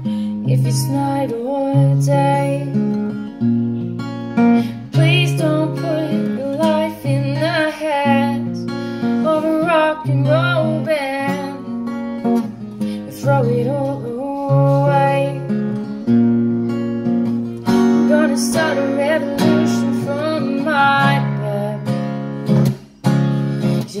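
Acoustic guitar strummed in chords that change about once a second, with a voice singing a melody over it.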